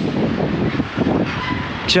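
Wind buffeting the microphone outdoors, a loud rough rumble with no clear tone, and a faint thin tone briefly in the second half.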